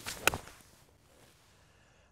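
Golf iron swung through, a short swish rising into one sharp, crisp click of the clubface striking the ball and turf about a quarter second in. It is a clean, ball-first strike with a shallow divot.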